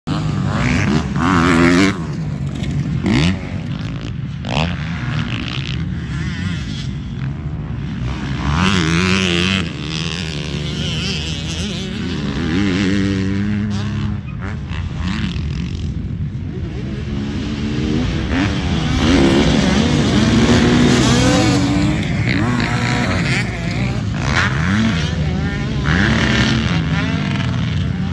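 Several motocross dirt bikes racing around a dirt track, their engines revving up and dropping back in pitch again and again as they accelerate, shift and pass, often more than one bike heard at once. The bikes are loudest about a second in and again around the twentieth second.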